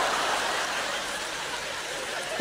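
Audience laughing, a dense wash of laughter from a large crowd that slowly dies down.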